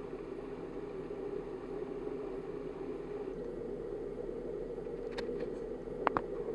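A vehicle engine idling with a steady low hum. A few faint clicks come about five seconds in.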